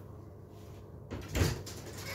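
A single loud thud or knock about one and a half seconds in, over a low steady hum.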